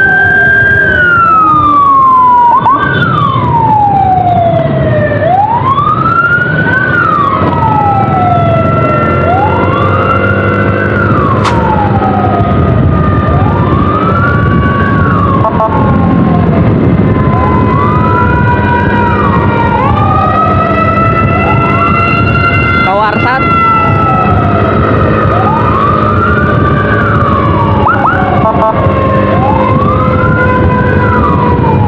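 Two electronic sirens wailing together: one sweeps up and down about every three seconds, while another glides slowly down in long sweeps and jumps back up, with a quick warble about two-thirds of the way through. They come from the escort motorcycle's CJB 200E siren and the ambulance following it, over a steady motorcycle engine and road rumble.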